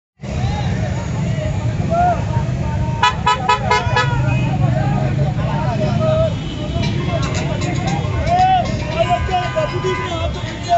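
Vehicle convoy with a crowd of voices shouting over a steady low rumble of engines, with car horns honking: a quick run of short toots about three seconds in and a steadier horn near the end.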